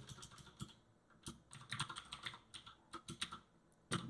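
Computer keyboard typing, faint: runs of quick keystrokes with short pauses between them as a word is typed out.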